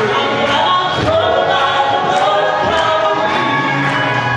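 Southern gospel vocal group, men's and women's voices, singing in harmony over musical accompaniment, with a steady beat of clapping about twice a second.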